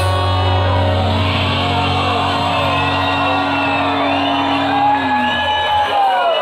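Live rock band, guitars and bass, holding one sustained chord that stops about five seconds in, while the crowd shouts and whoops over it.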